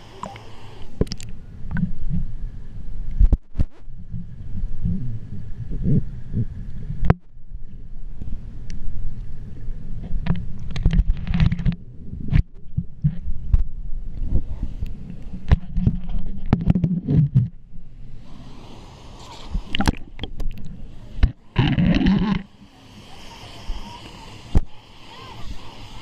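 Pool water sloshing and gurgling against a GoPro's housing as it rides at and below the surface, heard as a muffled low rumble with scattered sharp clicks and knocks.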